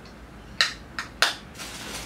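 Makeup items being put down and picked up: three sharp clicks of small hard objects, then a short rustle near the end.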